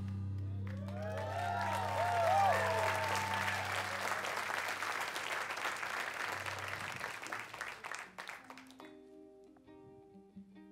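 Audience applauding and cheering at the end of a song, with whoops about a second in and a low held note fading underneath. Near the end the applause dies away and a guitar begins picking single notes.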